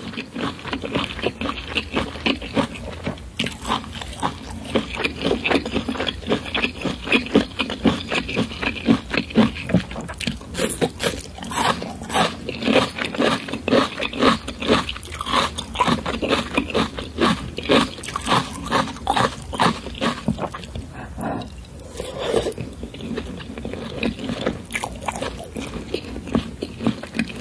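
Close-miked chewing of lobster meat, with wet mouth sounds and a dense run of small clicks. Fingers picking and scraping at the cooked lobster shell mix in.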